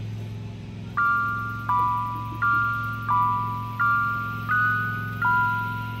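Background music: a gentle melody of struck, ringing notes, seven in all about 0.7 s apart, starting about a second in, over a steady low drone.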